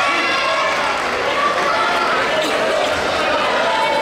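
Many voices shouting and calling at once around a taekwondo court, none of them clear speech, with a few soft thuds.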